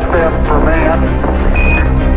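Background music with a steady low drone under a radio-transmitted voice from the Apollo 11 moon-landing broadcast, then a single short high beep about one and a half seconds in: the Quindar tone of NASA mission radio.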